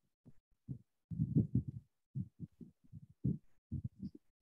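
About a dozen short, muffled low thumps at irregular intervals, with a denser run of them a little after the first second.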